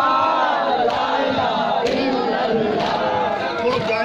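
A crowd of men chanting a Muharram nauha lament together, with short thumps about once a second, typical of matam chest-beating.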